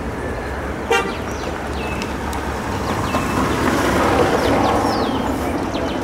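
A single short horn-like toot about a second in, over steady outdoor background noise. Small birds chirp throughout, and a broad rushing noise swells and fades in the middle.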